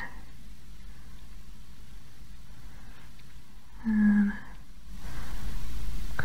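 Quiet room tone with a brief hummed vocal sound about four seconds in, and a soft hiss that rises near the end.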